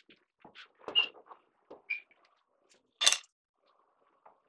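Small wooden blocks and a glue bottle being handled on a workbench: three short, sharp clicks and knocks, the loudest about a second in and near the end.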